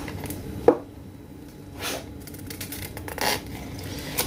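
Hand-crafting sounds of glue stick and paper: the glue stick rubbing over cardstock, a single sharp tap about two-thirds of a second in, and two brief paper rustles later on.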